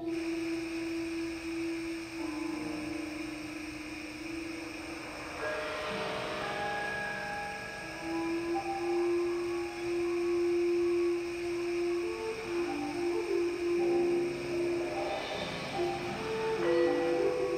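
Live ensemble improvising slow, ambient music: long held notes that change pitch every few seconds, with more notes layering in about halfway through.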